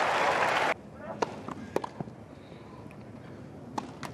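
Crowd applause that cuts off abruptly under a second in, then a quiet tennis court with a few sharp tennis-ball strikes and bounces of a rally, the last one about four seconds in.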